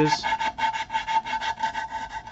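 A twisted strip of cloth-backed sandpaper pulled rapidly back and forth, shoeshine-style, through the slot of a wooden yarn bowl to round over its edges: a quick, even rasping rub of abrasive on wood.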